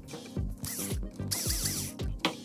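Small red electric screwdriver driving a screw into a metal frame bracket, whirring in two short bursts with its pitch rising and falling. Background music with a steady beat plays throughout.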